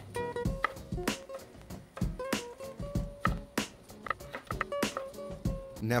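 Chef's knife chopping a bell pepper on a wooden cutting board in a string of irregular strikes, over background guitar music.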